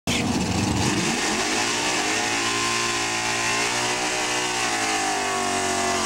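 1968 Chevelle drag car's engine revved high and held during a burnout, with its rear tyres spinning. The pitch climbs over the first couple of seconds, holds, then eases slightly near the end.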